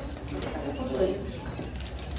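Indistinct murmur of voices in a press room, over a steady low hum.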